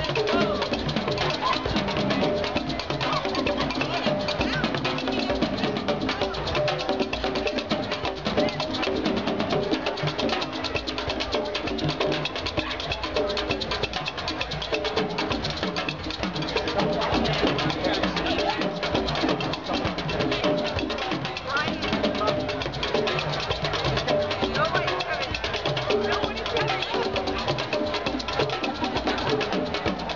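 A street hand-drum group playing together without a break: congas and other hand drums, with people talking in the crowd around them.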